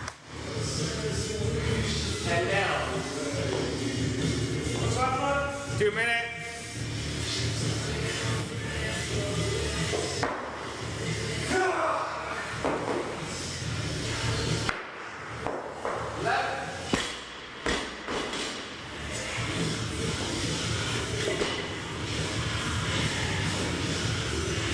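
A barbell loaded with bumper plates thudding onto the gym floor a few times, over background music and voices in a large room.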